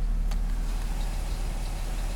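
Car engine idling steadily, a low hum heard from inside the cabin.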